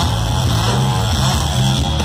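A two-stroke chainsaw revved on stage as a lead instrument in a live rock song. Its engine pitch rises and falls.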